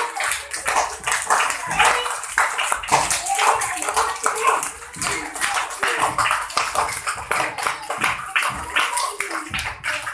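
Children playing actively: voices mixed with many quick slaps and claps, from bare feet landing and running on a stone floor and from hands clapping.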